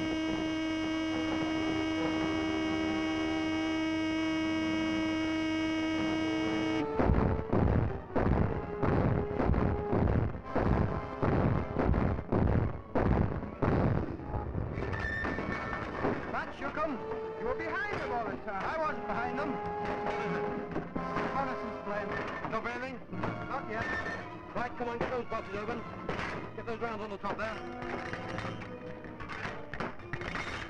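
A ship's alarm horn holds one steady note for action stations, then cuts off sharply about seven seconds in. Dramatic film music follows, opening with a string of heavy, evenly spaced hits and going on into a busier orchestral passage.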